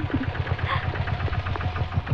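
Auto-rickshaw's single-cylinder engine idling at the kerb, a rapid, even pulsing beat of about a dozen strokes a second.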